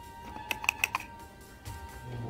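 A quick run of about five sharp clicks about half a second in, from the plastic parts of a micropipette being handled and fitted together by hand. Steady background music plays underneath.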